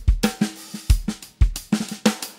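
Native Instruments Studio Drummer sampled acoustic drum kit playing an eighth-note hi-hat groove. Open and closed hi-hats play over kick and snare, with ghost notes on the snare.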